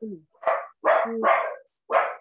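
A dog barking repeatedly, about four short barks in quick succession, heard over a video-call microphone.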